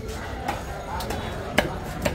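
Heavy cleaver chopping through fish onto a wooden log chopping block: three sharp chops about half a second apart, the last the loudest.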